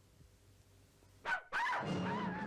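A cartoon dog yelping and whining on the cartoon's soundtrack. It comes in with a brief sharp sound about a second and a quarter in, after a near-silent first second, then turns into a wavering whine.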